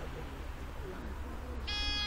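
Electronic shot timer sounding its start beep, a single steady high tone that begins near the end. It is the start signal for the shooter to draw and fire.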